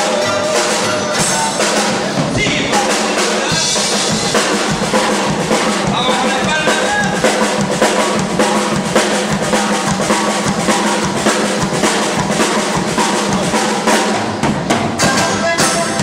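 A live band playing an instrumental passage led by a drum kit: a busy run of snare, bass drum and cymbal hits over strummed strings.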